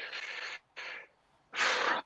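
A man's breaths into a video-call microphone before he speaks: two soft breaths, then a louder one about a second and a half in.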